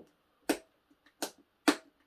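Three short, sharp clicks about half a second apart, from the control switches of a Schecter Hellcat bass VI being flicked.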